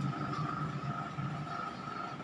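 Steady low drone with a thin high whine held over it, from a film soundtrack's background sound played through a television speaker and heard in the room.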